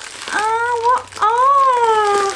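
A woman's high-pitched, wordless baby-talk cooing at a dog: two drawn-out calls, the second rising and then falling in pitch.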